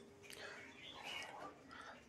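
Faint, whisper-like breath and mouth sounds from a man pausing between spoken phrases, barely above near silence.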